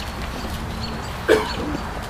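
A dog barks once, a little over a second in, over the low, steady background of an outdoor crowd.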